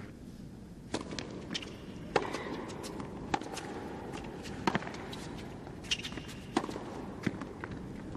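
Tennis ball struck back and forth by rackets in a baseline rally: a serve about a second in, then a sharp pock roughly every second and a quarter, over the low hum of an indoor arena.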